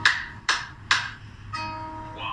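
Music with guitar: three sharp strummed chords about half a second apart, each ringing away, then a held chord near the end.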